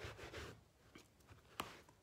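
Near silence, with faint rustling in the first half second and a single sharp click near the end.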